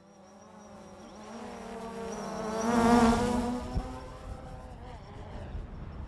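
Quadcopter drone flying fast over the microphone: a buzzing propeller hum that grows louder, peaks about halfway through, then falls away.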